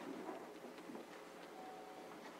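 Faint room tone of a meeting chamber during a pause, with scattered small clicks and rustles and a brief faint tone near the end.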